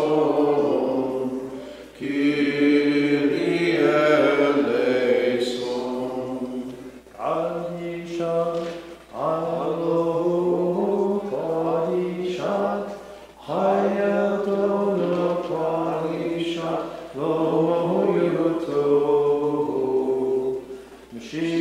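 Voices chanting a Maronite liturgical hymn in phrases of a few seconds, each broken off by a short pause for breath.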